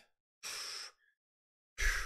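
A man's short, noisy breath into a close microphone, lasting about half a second, then another breath near the end just before he speaks again.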